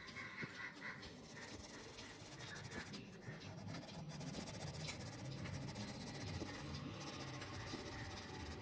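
Green crayon rubbed back and forth on paper, colouring in a band of a drawing with steady strokes.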